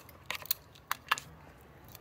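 A few small sharp clicks and light rustling from hands handling small plastic craft pieces, most of them in the first second or so.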